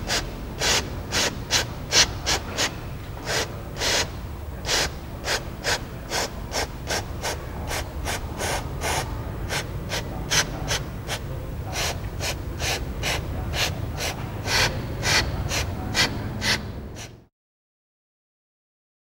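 Aerosol can of engine degreaser sprayed through a red extension straw onto an oily air-cooled cylinder head in many short hissing bursts, about two to three a second, stopping near the end.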